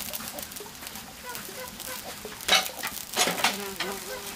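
Food sizzling as it fries in a steel wok over a wood fire, with a fine, steady crackle. There are louder sharp crackles about two and a half and three seconds in, and a short pitched animal call near the end.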